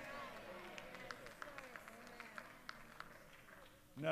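Very quiet background of faint voices, with a few scattered light clicks. It cuts off into silence just before the end.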